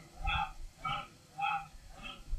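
A dog barking in a quick series of short barks, about two a second.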